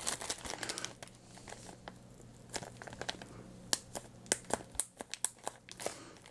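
Thin clear plastic bag crinkling as it is handled and opened: busy rustling in the first second, then a run of sharp, separate crackles in the second half.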